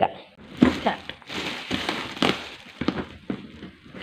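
Plastic packaging crinkling and a cardboard box being handled, in scattered rustles and light taps.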